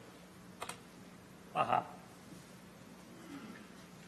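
Papers and a folder being handled at a lectern, picked up by the lectern microphone: a light click, then a short, louder knocking rustle about a second and a half in, over a faint steady hum from the sound system.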